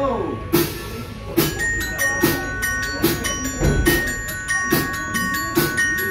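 A live band opening a song: clean electric guitars and bass pick a slow, steady pattern of struck notes, with several bell-like high notes left ringing over it.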